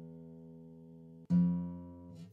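A single low note plucked on an acoustic guitar and left to ring and die away, then plucked again about a second in. The note is sounded to check by ear whether a guitar is tuned half a step above standard E, to F.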